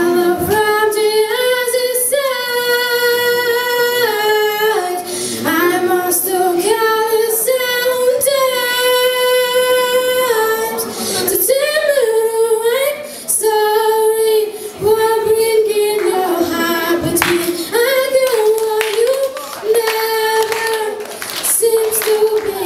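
A young female solo voice singing a slow ballad into a microphone, with long held notes that step up and down in pitch every second or two.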